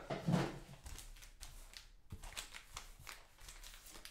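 Faint, scattered taps and light crinkles of cello-wrapped trading card packs being set down and stacked on a table.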